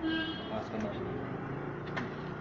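Outdoor street background of passing traffic and distant voices, with a short steady high tone, like a distant horn, in the first half second.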